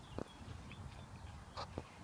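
Faint outdoor background: a low rumble of wind on the microphone with a few soft clicks.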